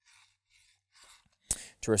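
Faint, short rasping strokes, about three, of a steel broadhead blade worked up and down against the flat abrasive plate of a Work Sharp Guided Field Sharpener.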